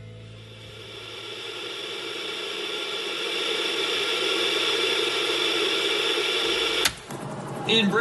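Television static hiss, swelling up from quiet over the first couple of seconds and holding steady, then cut off by a sharp click about seven seconds in, just before a newsreader's voice starts.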